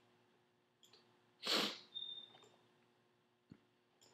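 A man's short, sharp breath through the nose about a second and a half in, followed by a few softer breaths, with a couple of faint clicks.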